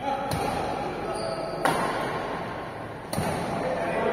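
Badminton rackets striking a shuttlecock in a rally, three sharp hits about a second and a half apart, ringing in a large echoing hall.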